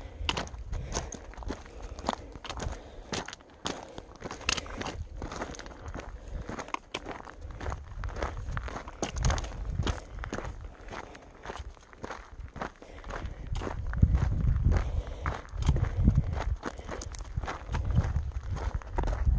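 A hiker's footsteps crunching on a rocky, gravelly trail at a steady walking pace. A low rumble swells near the end.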